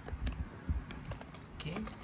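A scatter of light plastic clicks and taps as a clear plastic display case is handled and opened and a die-cast toy car is taken out of it.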